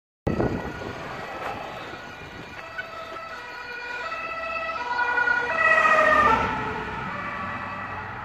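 German two-tone emergency siren (Martinshorn) on an emergency doctor's car (NEF), alternating between its two notes. It grows louder as the car approaches, drops in pitch as it passes about six seconds in, then fades away.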